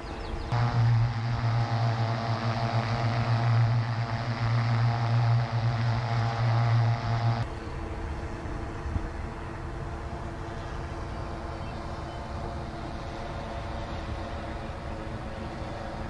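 Alta 8 octocopter hovering overhead, a steady multi-rotor propeller hum with a low drone and several even overtones. The hum is strongest for the first seven seconds, then stops abruptly and continues fainter.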